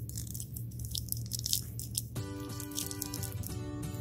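Faint small clicks and taps of plastic doll boots being handled and pushed onto a doll's feet. Soft background music with steady held chords comes in about halfway through.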